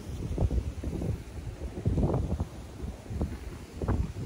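Wind buffeting the microphone in irregular gusts, a low rumble that swells and drops.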